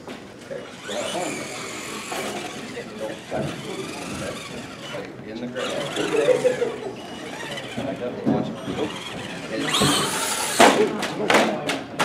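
Radio-controlled monster truck's motor and drivetrain whining as it drives and accelerates across the arena floor, swelling in bursts and loudest about ten seconds in, with background voices of onlookers.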